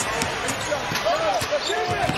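Live court sound from an NBA broadcast: a basketball bouncing on the hardwood floor several times amid steady arena noise.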